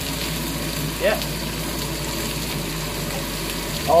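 Whole prawns frying in hot oil in a wok: a steady sizzle.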